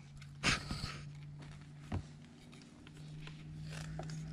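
Quiet handling of a wire and crimping pliers: a short hiss about half a second in and a single light click near two seconds, over a steady low hum.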